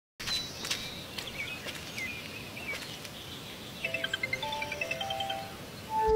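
Birds chirping, short gliding calls, over a faint outdoor background. About four seconds in, a phone's video-call ringing tone starts: a short electronic melody of clear, steady notes.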